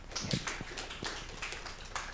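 Scattered light taps and knocks, a few each second, at irregular spacing.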